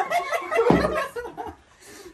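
Men laughing and chuckling, dying down about a second and a half in.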